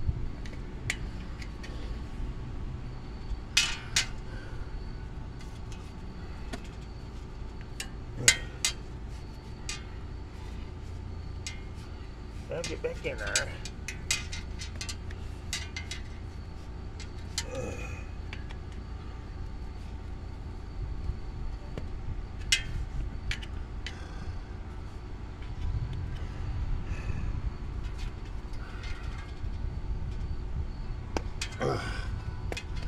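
Bicycle tire being worked onto its metal rim by hand and with a hand tool: scattered sharp clicks and snaps of rubber and tool against the rim, loudest a few times in the first third.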